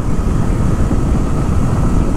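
Motorcycle riding at a steady road speed: wind rushing over the camera microphone over the engine and tyre drone.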